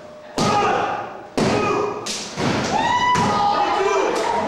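Two hard impacts in a wrestling ring, about a second apart, each sudden and echoing around the hall, followed by a long held shout.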